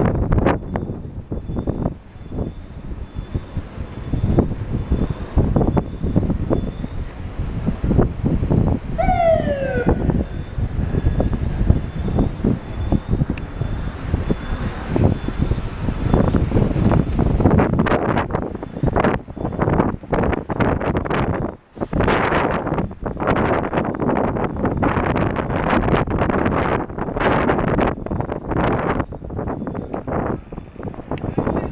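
Gusty hurricane wind buffeting the microphone, growing choppier and harder in the last third. A brief falling pitched tone cuts through about a third of the way in.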